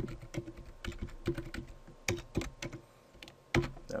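Typing on a computer keyboard: a run of irregular keystrokes, with one louder click shortly before the end.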